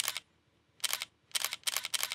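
Camera shutter clicks: a pair at the start, another pair just under a second in, then a quick run of clicks near the end.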